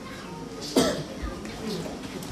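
A single cough, sudden and short, a little under a second in, with faint voice in the background.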